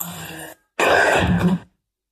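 Two short, rasping, garbled voice-like fragments from the Necrophonic ghost-box app: a quieter one at the start, then a louder one about a second long.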